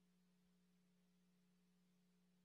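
Near silence on a live broadcast feed, with only a very faint steady hum.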